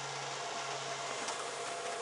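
Steady hiss with a faint low hum from electrical equipment running inside a parked van.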